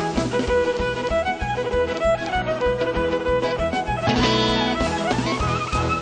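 Violin playing a melody of long held notes over a band's steady beat. About five seconds in, the violin slides up into a higher, wavering line.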